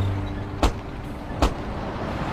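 Old minivan driving: a low engine and road rumble, with two sharp knocks a little under a second apart as the worn van jolts over the rough road.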